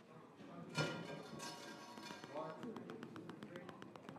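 A school concert band playing quietly: a short pitched hit about a second in, a second note shortly after, then a run of light, fast taps in a steady rhythm before the brass comes in.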